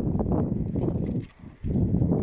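Wind buffeting a phone's microphone while cycling: a loud, irregular low rumble that dips briefly just past the middle.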